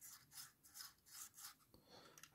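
Faint scraping of a model locomotive tender's wheels turned by finger against their pickup contacts, a soft rub about twice a second: the wheels turn with quite a bit of resistance.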